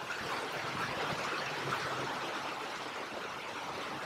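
Water trickling steadily into an aquaponics fish tank, kept flowing by the system's water pump.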